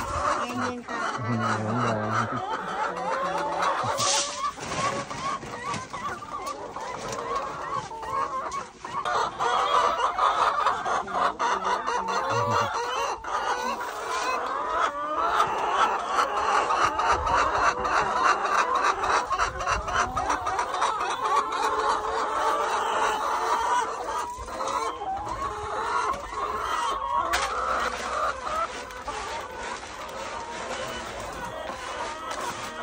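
A flock of brown laying hens clucking continuously, many overlapping calls at once.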